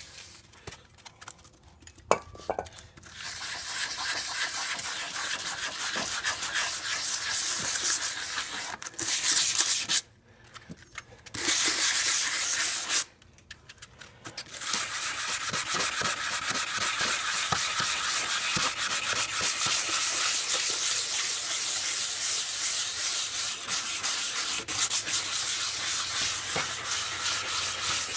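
180-grit sandpaper on a hand sanding block scrubbing back and forth over an oxidized plastic headlight lens wetted with rubbing alcohol. The sanding starts about three seconds in, stops briefly twice around the middle, then runs on steadily.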